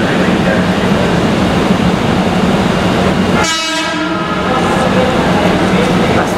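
A train horn gives one short blast lasting under a second, about three and a half seconds in, over the steady low hum of a train standing at the platform.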